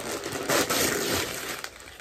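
Gift wrapping crinkling and rustling as a present is unwrapped and clothing is pulled out, loudest for about a second starting half a second in.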